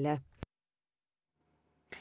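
The tail of a narrator's voice, then a single sharp click less than half a second in, followed by dead silence and faint studio hiss coming up near the end: the click and the drop-out of an edit point where one recording is cut to another.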